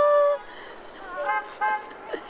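Car horns honking: a long steady tone that cuts off shortly after the start, then two short toots a little past halfway.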